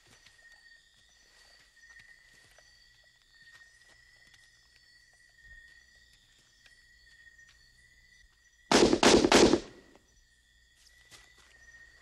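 Faint, steady high-pitched chirping of night jungle insects. About three-quarters of the way through comes a short burst of four loud gunshots in under a second.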